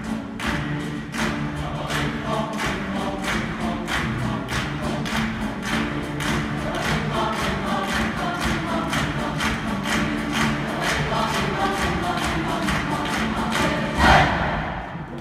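Large choir singing in full voice over an instrumental ensemble of guitars, brass and strings, with a steady driving beat. The music peaks loudest right at the end.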